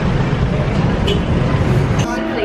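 Street traffic noise: the steady low drone of running vehicle engines close by, which cuts off suddenly at the end.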